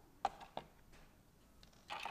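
Two sharp little clicks close together, then a brief clatter near the end: small metal jewelry pliers being handled while opening a metal jump ring.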